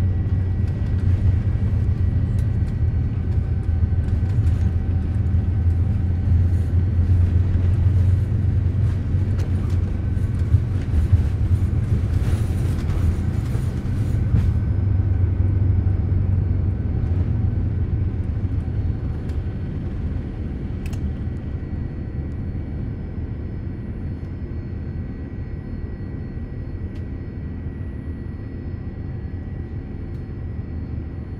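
Inside the cabin of a Boeing 787 Dreamliner on a night takeoff: a loud, deep rumble of the engines and takeoff roll, with rattling from the runway for the first half. Roughly halfway through the rattling stops as the wheels leave the ground, and the rumble turns smoother and slowly quieter as the jet climbs.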